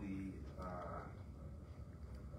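A man's voice in drawn-out, wavering sounds with no clear words: one at the start and a longer one about half a second later.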